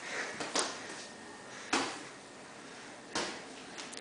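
Scattered thuds and slaps from boxing-glove sparring in a small tiled room, a few short sharp hits with the loudest a little under two seconds in.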